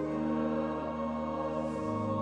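Organ playing sustained chords, the harmony shifting to a new chord with a lower bass note near the end.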